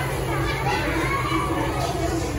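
Indoor playground din: many children's voices and adults talking over one another, with a steady low hum underneath.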